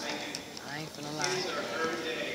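A man speaking into a podium microphone, with a few sharp clicks.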